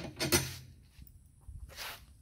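Brief handling noise: a short rustle and knock about a third of a second in, then another short rustle near the end, as a bolt and the steel seat frame are handled.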